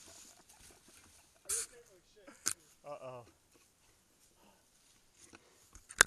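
Faint, distant human voice with a short wavering call about three seconds in, over quiet woodland; a couple of sharp clicks, the loudest right near the end.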